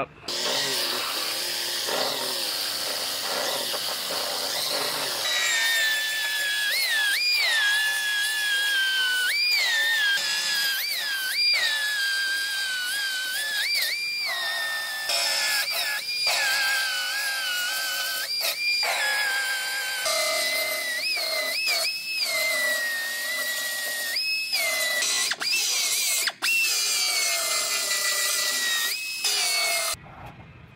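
Narrow belt sander grinding through the sheet metal of a car's quarter panel to cut it off. Its motor makes a high whine that keeps jumping up in pitch for a moment and then sinking back, over grinding noise.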